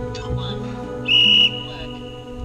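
A single electronic beep, one steady high tone about half a second long, over background music: the kind of signal an interval timer gives to start a work period.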